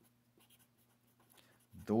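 Felt-tip pen writing on paper: faint, short scratching strokes as letters are written.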